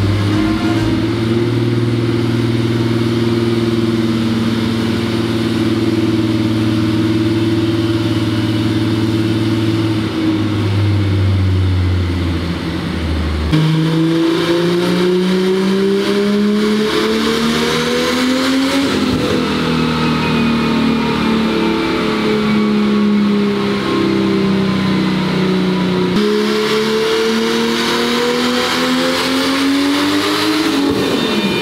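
Turbocharged engine of a Mk2 VW Golf running on a chassis dyno under ECU tuning. It holds a steady speed for about thirteen seconds, then drops, and its revs rise and fall in slow sweeps, climbing again near the end.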